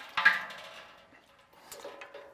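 A sharp metal knock against a stainless-steel brew kettle, which rings on and fades away over about a second.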